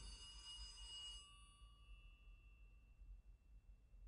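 Landline telephone bell ringing faintly, the ring dying away about a second in, leaving near silence.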